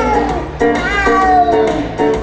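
Dance music track with repeated short chord notes, overlaid with sliding, falling meow-like cat calls, one about half a second in and another just after a second.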